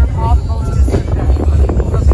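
A woman's voice over loud music, with wind rumbling on the microphone.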